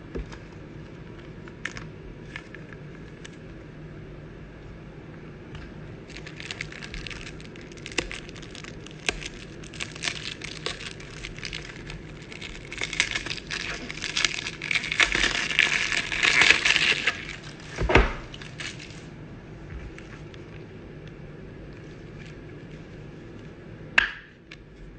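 Crinkling and clicking of thin plastic as a card protector and a rigid plastic toploader are handled to hold a trading card. It starts about six seconds in, is loudest a few seconds before it stops, and ends with a single knock.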